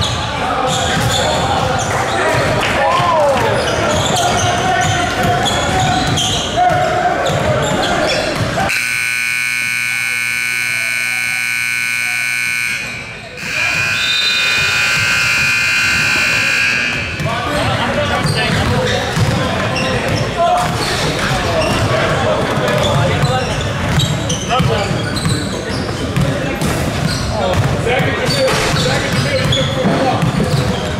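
Basketball game noise in a gym: a ball bouncing on the court amid players' and spectators' voices. Near the middle, the scoreboard horn sounds twice, each blast held for about four seconds, with a brief break between them.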